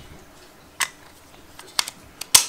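Hard plastic clicks of a Sony L-series camera battery being fitted onto the Hollyland Mars 300 transmitter's battery plate: one click about a second in, then two quick clicks near the end.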